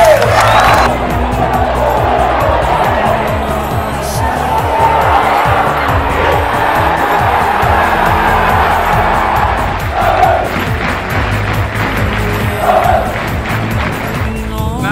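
Background music with a low bass line, mixed with the roar of a large football crowd cheering.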